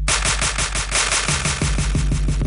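Electronic dance music with a fast drum-machine roll of sharp, noisy hits, many per second, over a steady bass note.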